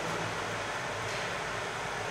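Steady room tone of a large meeting hall: an even background hiss with no distinct sounds.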